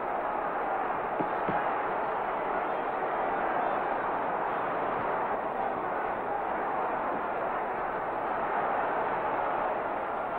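Steady crowd noise from a boxing audience, an even wash of many voices with none standing out.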